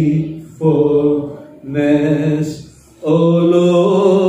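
A man's solo voice singing a slow worship song unaccompanied into a microphone, in three long held phrases with short breaks between them.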